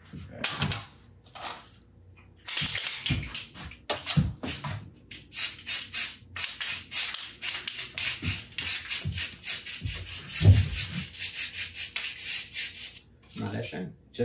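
Aerosol can of Streaks 'N Tips brown hair-colour spray hissing in many quick short bursts, being dusted lightly onto the metal carbonite panel to weather it. There are a few short puffs first, then a long run of closely spaced bursts.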